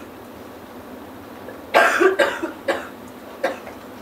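A person coughing in a quiet room: one hard cough about two seconds in, followed by two shorter coughs.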